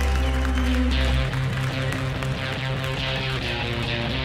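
Live band music: a held low bass note stops about a second in, and guitar strumming takes over in a steady rhythmic pattern.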